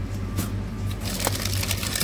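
Crinkling and crackling of foil snack wrappers as glazed curd bars are grabbed out of a cardboard box, thickest from about a second in, over a steady low hum.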